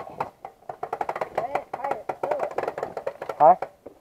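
Irregular run of light clicks and knocks, several a second, from a dirt bike's drive chain being handled while it is checked for tension; the chain is very tight.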